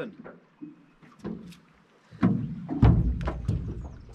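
A few faint clicks, then from about halfway a run of heavy thumps and knocks on the aluminium deck and hull of a Stabicraft 1450 boat as someone moves about on it.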